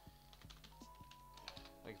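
Faint typing on a computer keyboard: several quick key clicks, as a web address is entered.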